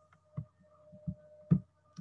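A few soft knocks, the loudest about one and a half seconds in, over a faint steady hum.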